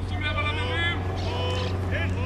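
Rugby players shouting short calls at a scrum, over a steady low hum.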